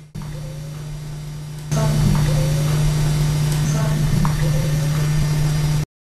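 Boosted camcorder audio with a steady low electrical hum, made louder about two seconds in, with a faint, thin wavering cry under it that the investigators take for a disembodied cry and also compare to a cat's cry or noise from a party across the street. It cuts off just before the end.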